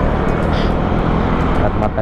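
Wind noise rushing over the camera microphone with a Yamaha scooter's engine running steadily underneath while riding at road speed.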